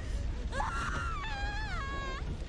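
A person's high-pitched wailing cry, starting about half a second in and held for over a second before its pitch drops.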